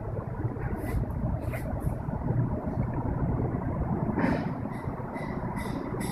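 Steady low background rumble, with a few faint clicks.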